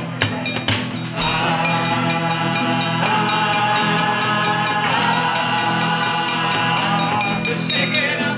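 Live band music: long held chords ring out from about a second in until near the end, over a steady ticking percussion beat.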